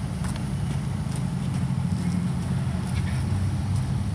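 Hard-soled boots of a marching color guard stepping on pavement: a few scattered sharp steps over a steady low rumble.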